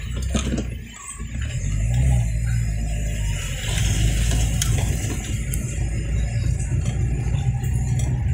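Car engine and road rumble heard from inside the cabin as the car drives along, a steady low drone that swells about a second in and then holds.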